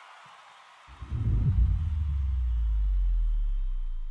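Logo-sting sound effect: a soft hiss, then about a second in a sudden deep bass boom that rumbles on and slowly dies away.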